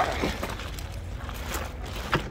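Plastic bag wrapping a heavy portable power station rustling and crinkling as the unit is lifted out of its cardboard box and set down, in a few short crackles over a low steady rumble.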